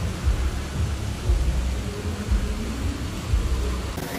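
Wind buffeting the microphone: an uneven low rumble that swells in gusts, over a faint steady hiss.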